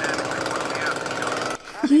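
Chainsaw engine running in a film soundtrack, a dense rapid rattle that starts abruptly and cuts off suddenly after about a second and a half.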